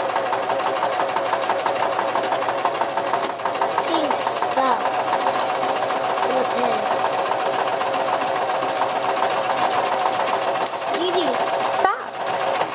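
Electric household sewing machine running steadily under the foot pedal, the needle stitching fast with an even, rapid ticking as it sews a straight seam through pinned cotton fabric.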